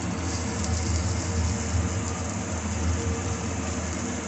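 Grated-potato and buckwheat-flour chilla frying in a lightly oiled nonstick pan: a steady soft sizzle over a constant low hum.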